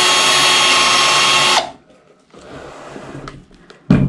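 Black+Decker cordless drill running at a steady speed, boring a hole into the edge of a plywood drawer box, then winding down with falling pitch after about a second and a half. A sharp thump near the end.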